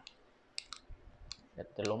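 About five light, sharp clicks of a small Phra Somdej amulet being handled and set upright on a hard surface for a magnet test, which checks whether the amulet holds iron.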